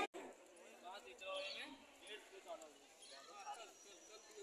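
Faint voices of people talking at a distance, no single voice clear.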